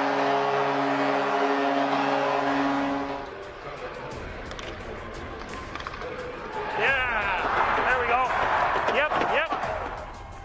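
Music with steady held notes for about three seconds, then ice hockey game sound with the music gone, then players shouting excitedly in celebration of a goal during the last three seconds.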